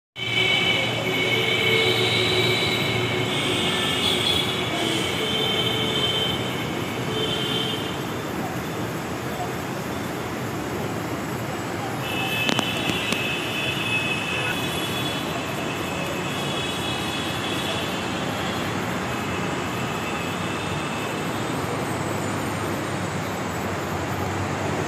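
A train running past with a steady rumble and high-pitched wheel squeal that comes and goes twice, plus one sharp click about halfway through.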